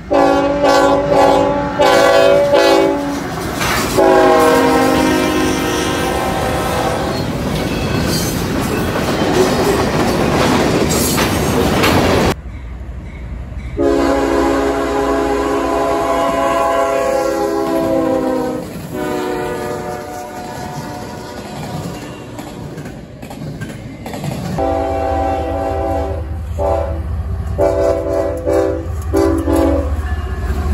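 Diesel freight locomotives' multi-note air horns blowing long blasts, with the noise of a passing train about halfway through the first stretch. The sound cuts abruptly from one clip to the next about 12 seconds in and again about 24 seconds in, each clip holding more horn blasts, the last over a low engine rumble.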